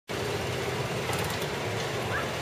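Motor of an antique-style ride car running with a steady low hum.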